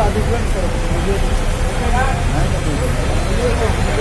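People talking in short bursts over a steady low rumble of vehicle noise.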